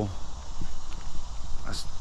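A steady low rumble on the handheld phone's microphone, with a few faint ticks, and a man's voice starting near the end.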